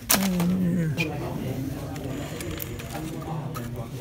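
A sharp click right at the start, then a single voice for about a second with its pitch falling, followed by low, indistinct chatter of people in a busy shop and small handling clicks.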